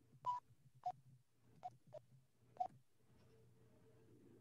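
Five faint, short blips at uneven intervals over a low steady hum.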